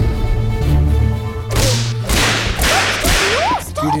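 Film soundtrack for a dramatic entrance: a deep held bass with a sustained chord, then a quick run of four or five sharp whip-like whooshes.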